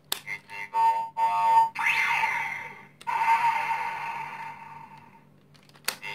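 Toy Kamen Rider transformation belt with Astro Switch-style rider switches: a switch clicks, then the toy's speaker plays electronic sound effects, a string of short beeps followed by two longer synthesized tones. Another switch clicks just before the end.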